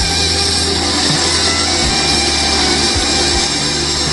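Bamboo toothpick-making machine running steadily, a continuous mechanical whir, as toothpicks drop into its output tray.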